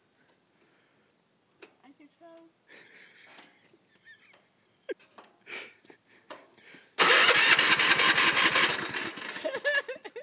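Riding lawn tractor's electric starter cranking the engine: a loud, rough, rapidly pulsing cranking sound that starts suddenly about seven seconds in, lasts under two seconds and then dies away unevenly without the engine settling into a run.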